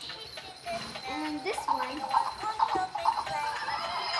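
Battery-operated Christmas plush toy playing a recorded song with a singing voice through its small speaker, starting about a second in.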